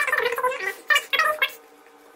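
A few short, high-pitched vocal sounds whose pitch bends up and down, coming in the first second and a half.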